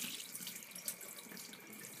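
Tap water running in a steady stream onto a raw goose heart held in the hand, splashing into a sink.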